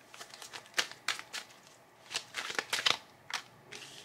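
A tarot deck being shuffled and handled by hand: irregular quick card flicks and taps, in short clusters.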